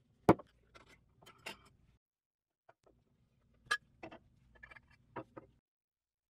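Aluminium and steel parts of a RAM air motor knocking and clinking against each other and a wooden workbench as the end caps come off the cylinder: one sharp knock just after the start, then scattered lighter clicks and taps in two groups.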